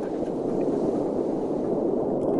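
A steady low rushing underwater noise as the bathyscaphe Trieste sinks beneath the surface, with no tones or distinct events.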